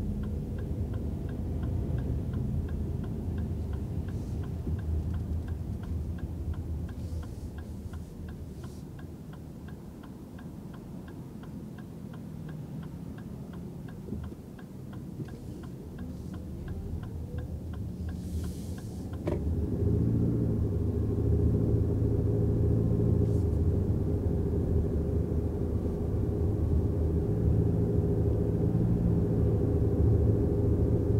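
Turn-signal indicator ticking steadily inside the 2024 Lexus RX350h's cabin over low road rumble, stopping with a sharp click about two-thirds of the way through. After that the cabin rumble of road and tyres grows louder and holds steady as the hybrid SUV drives on at speed.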